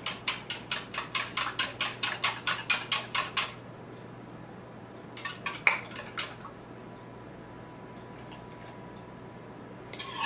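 Wire whisk beating eggs in a measuring cup: fast, even clicking strokes, about six a second, that stop about three and a half seconds in. A couple of light taps follow near the middle.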